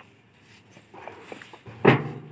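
Fly ash bricks knocking together as they are handled and stacked: a few faint taps, then one loud clack near the end.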